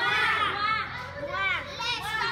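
A group of young girls' voices calling out and talking over one another.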